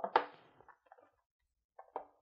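Cardboard deck box being handled: a sharp knock and rustle right at the start that dies away within about half a second, then quiet, then a few small taps near the end.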